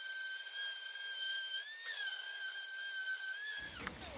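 Ryobi random orbital sander running on a white oak top, a steady high-pitched motor whine that wavers slightly and cuts off near the end, as a filled joint is sanded smooth.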